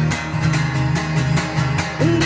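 Acoustic guitar strumming a steady rhythm of chords, played live through a PA, in an instrumental gap between sung lines.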